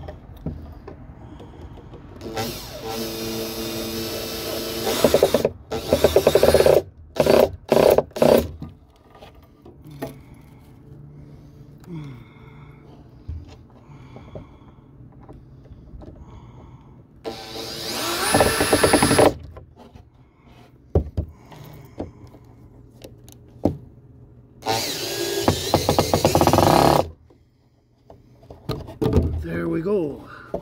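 Makita cordless drill driving screws into plywood: several runs of one to three seconds, with quick trigger blips about eight seconds in and one run that speeds up before holding steady. Quieter handling and knocking of the wood between runs.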